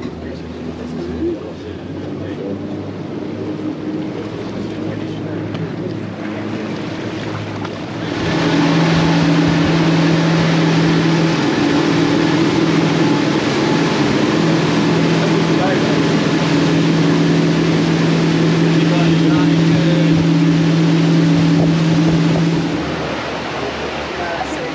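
Passenger speedboat's engines droning over rushing water and wind. About a third of the way in the sound jumps to a much louder, steady, higher engine drone at cruising speed, heard from inside the canopied passenger cabin. Near the end it drops back to a quieter run over the wake.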